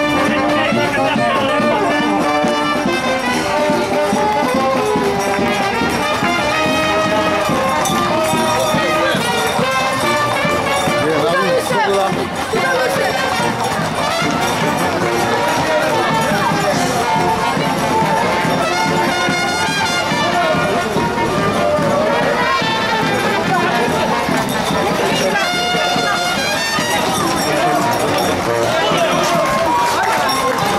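Brass music playing over the chatter and shouts of a crowd.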